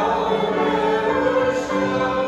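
A woman singing solo in long held notes, with piano accompaniment.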